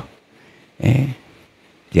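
A short pause in a man's amplified speech, broken about a second in by one brief wordless vocal sound from him, a hesitation noise, before he talks again.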